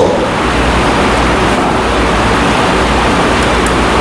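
Steady, loud rushing noise with a low rumble underneath and no speech.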